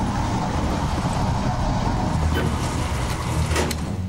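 A steady, low rumbling drone with a hiss on top: the ambient sound bed of a science-fiction TV drama scene, with a few faint clicks near the end.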